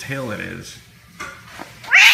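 A low, drawn-out moan in the first half second, then a cat's loud, high yowl breaking out right at the end as two cats start to scuffle.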